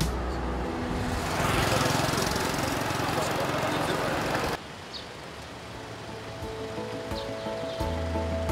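Outdoor wind and road noise on a bridge, a steady rushing that swells about a second and a half in. It cuts off abruptly a little past halfway, and soft background music then fades in.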